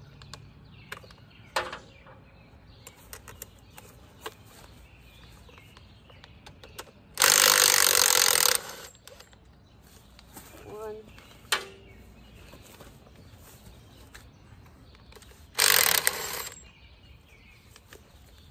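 Cordless impact wrench running in two bursts of about a second each, about seven seconds in and again near the end, undoing bolts; light clicks and clinks of tools between.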